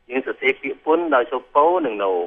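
Speech only: a lecturer talking in Khmer in short phrases. The voice sounds narrow and radio-like, with no highs.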